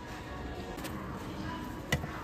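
Faint store background music under a low room hum, with one sharp click near the end as a plastic cup is taken off a shelf.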